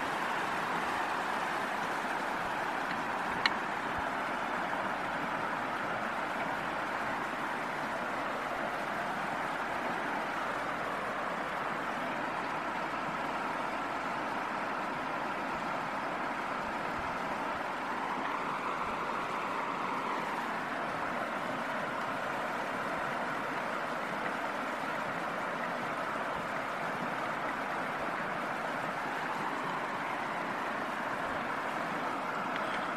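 Steady rush of river water pouring over a low stone weir, with one sharp click about three and a half seconds in.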